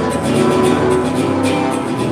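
Guitar accompaniment for a malambo, with rapid percussive strikes of about five or six a second from the dancer's boots stamping and brushing the stage in zapateo footwork.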